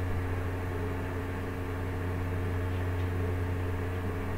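Steady low hum with an even hiss: constant background noise of the room and recording, with no marked events.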